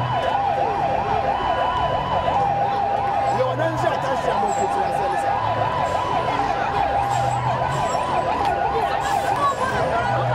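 Police vehicle sirens sounding continuously in a fast rising-and-falling yelp, about three sweeps a second. Under it a second steady tone comes and goes roughly every second, over the low drone of the vehicles.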